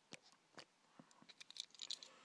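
Near silence with faint, scattered small clicks and scratches, a little more frequent in the second second, from fingers handling a small die-cast toy car close to the microphone.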